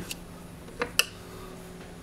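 Two light, sharp clicks in quick succession about a second in as the opened AP50 circuit breaker is handled and turned over, with a faint steady hum underneath.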